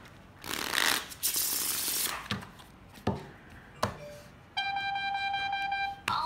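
A deck of playing cards being shuffled and handled on a felt table: a rustling shuffle for the first couple of seconds, then a few light taps. A steady electronic beep with overtones starts about four and a half seconds in and holds for about a second and a half.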